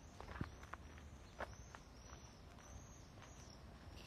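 Faint footsteps walking on a path: a few irregular soft steps over quiet outdoor background noise.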